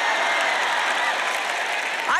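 A large audience applauding, a steady, even wash of many hands clapping.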